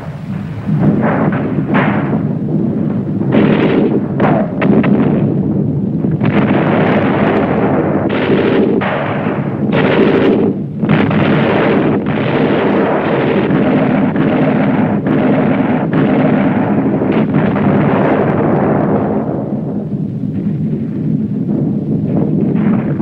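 Battle sound of dense gunfire and explosions: a continuous din of shots and blasts, with sharp cracks standing out every second or so and easing slightly near the end.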